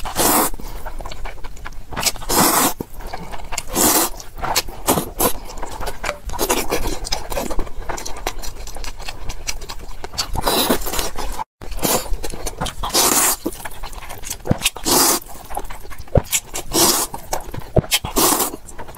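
Close-miked slurping of ramen noodles from chopsticks: loud wet sucking slurps come every second or two, with smaller wet mouth clicks between them. There is a brief gap of silence about halfway through.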